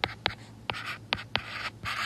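Stylus writing on a tablet: about five sharp taps and a few short scratchy strokes as numbers are handwritten.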